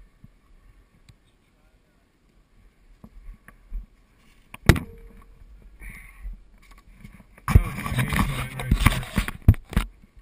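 Close handling noise as a large solar panel is moved right against the camera: a sharp knock about five seconds in, then two seconds of loud rubbing and scraping near the end.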